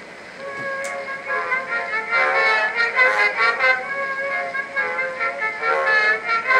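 Edison Amberola 30 cylinder phonograph playing a Blue Amberol cylinder: an instrumental band break with no singing, swelling in over the first second or two, over a steady surface hiss.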